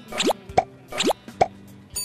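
Two quick upward-sliding sound effects, each followed by a short pop, over light background music.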